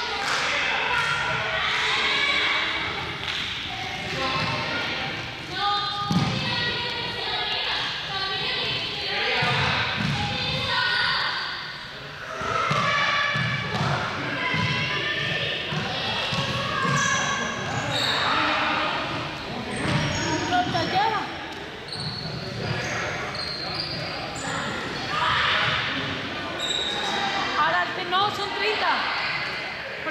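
Several voices chattering in a large, echoing gym hall, with repeated thuds of balls bouncing on the floor.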